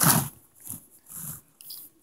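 A short loud burst of rubbing noise right at the start, then a few soft rustles and light taps: handling noise from the recording phone being moved and small plastic toys being set on a wooden table.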